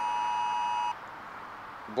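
Phone's Amber Alert (Wireless Emergency Alert) attention tone: a steady two-pitch beep lasting about a second, one of a repeating series, which stops about halfway through.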